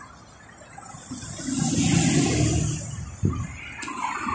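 A road vehicle passing close by, its noise swelling and fading over about two seconds, with a short click near the end.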